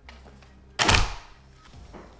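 A single loud thunk about a second in, from household items being picked up and knocked together, followed by a faint click near the end.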